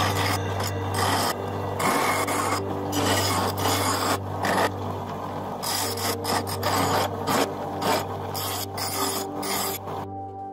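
Irregular scraping and rubbing strokes of metal on metal, coming in uneven bursts, over a steady low hum.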